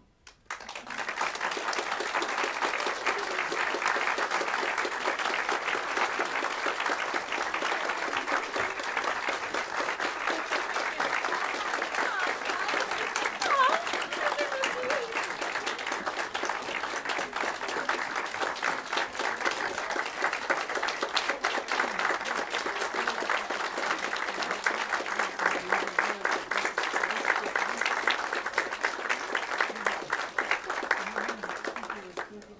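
Audience applause breaks out about half a second in and keeps going steadily as sustained clapping from a small crowd.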